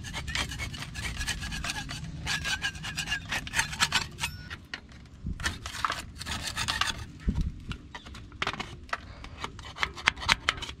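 A wide metal scraper blade scraping old grease and grime off the steel front axle spindle of a 1962 Ford F600, in many short, irregular strokes.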